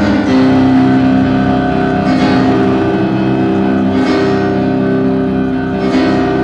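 Upright piano played solo: sustained chords, with fresh notes struck about every two seconds and ringing on in between.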